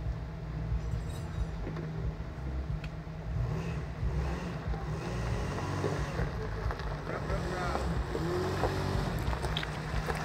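Engine of a three-wheeled stretch limousine running with a steady low rumble as the vehicle moves slowly forward.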